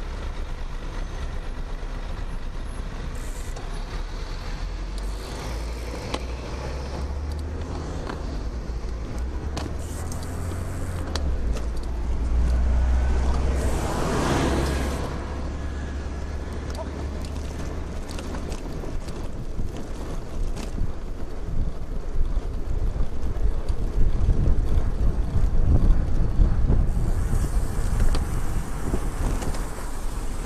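Road traffic heard from a moving bicycle, with a steady low wind rumble on the microphone. A passing vehicle swells up and fades about halfway through, and traffic behind grows louder towards the end as a vehicle draws close.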